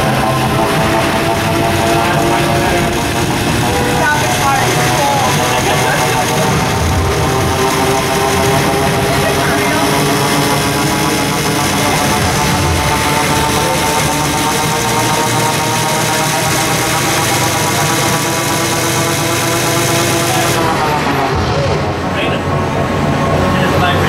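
A novelty electric-chair shock machine buzzing while its handles are gripped: a loud, steady drone of several tones that drift slowly in pitch, changing about three seconds before the end.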